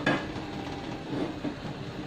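Frying pan settling and shifting on a gas hob's metal grate with light knocks, over the steady hiss of the lit gas burner beneath it.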